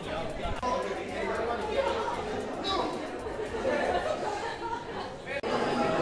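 Many people talking at once: indistinct, overlapping chatter, with an abrupt break about five seconds in.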